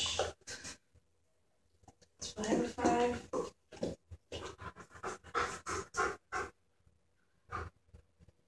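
A dog panting in quick, even breaths, about four or five a second, with a short stretch of a voice just before.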